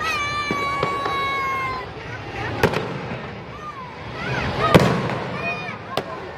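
Aerial fireworks bursting, with two sharp bangs about two and a half and nearly five seconds in, the second the loudest. Spectators call out over them, starting with a long high cry held for the first couple of seconds.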